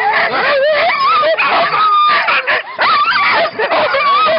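A team of husky sled dogs yelping and howling at once, many wavering calls overlapping, the excited racket of sled dogs being harnessed for a run.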